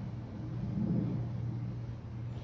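A steady low hum with a low, uneven rumble underneath.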